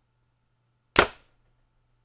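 A Bowtech Carbon Zion compound bow firing an arrow: one sharp snap of string and limbs about a second in, dying away within a fraction of a second even though the bow has no string silencers.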